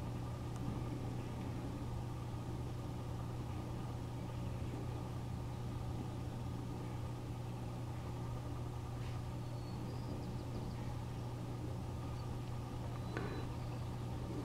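A steady low machine hum with faint higher steady tones, unchanging throughout.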